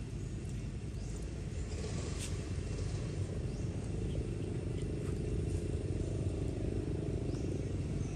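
A steady low rumble of outdoor background noise, growing slightly louder toward the end, with a few faint, short, high chirps over it.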